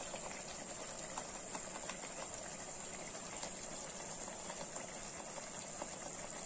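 Thick onion gravy simmering in a pan: faint, scattered bubbling pops over a steady background hiss.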